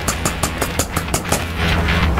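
Film soundtrack: a fast, even ticking, about eight ticks a second, over a low sustained hum. The ticking stops about a second and a half in while the low hum carries on.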